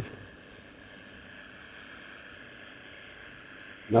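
Vivax Metrotech vLoc3-Pro cable locator receiver in radio mode giving a steady, faint hiss that never rises. It is picking up no cable signal.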